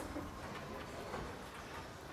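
Faint bowling-centre room ambience: a low hum of the hall with a few scattered light clicks and faint distant voices.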